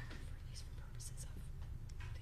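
Faint, indistinct voices in which only soft hissing consonants stand out, over a steady low hum.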